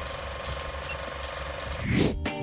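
Film projector sound effect: a steady, rapid mechanical clatter of film running through the projector, with a rising whoosh near the end.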